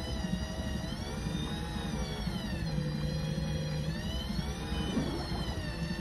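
Electric fishing reel's motor whining as it winds in a hooked fish, its pitch sagging and recovering as the fish pulls against it and holding steady for about a second in the middle. A steady low rumble runs underneath.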